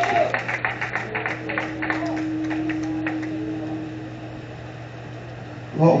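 Rhythmic hand clapping, about five claps a second, fading out over the first two seconds or so. A single steady note is held under it for a few seconds, and a constant low hum runs throughout.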